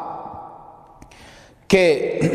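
A man's voice trailing off into a short pause, a soft breath in, and then his speech resuming near the end.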